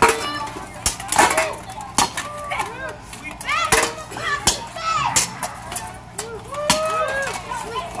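Sword blows in a sparring bout, several sharp clacks at irregular intervals as blades strike bucklers, shields and armour, with spectators' voices calling out between the hits.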